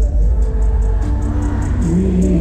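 Live concert music played loud over an arena sound system, caught on a phone: heavy bass and held notes over a steady beat.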